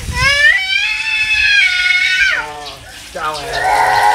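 A toddler's long, high-pitched vocal sound, rising and then held for about two seconds before falling away, with a shorter call near the end, over water running from a garden hose onto her muddy feet.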